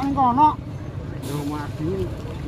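Men's voices talking outdoors over a steady low rumble, with a brief hiss a little after a second in.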